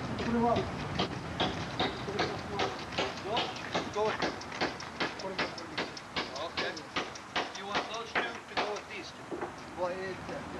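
Footsteps on gravel, a steady run of short sharp steps about two or three a second, with voices and a laugh.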